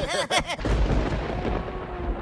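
A few short cartoon pig vocal sounds, then from about half a second in a low, rolling thunder rumble sound effect that carries on, with a faint steady tone above it.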